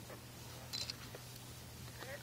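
A faint steady low hum with a single short, sharp click a little under a second in and a fainter tick just after.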